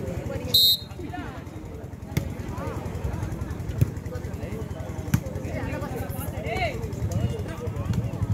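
Spectators talking and calling out during a volleyball rally, with a short shrill whistle blast about half a second in and sharp slaps of the ball being struck about two, four and five seconds in.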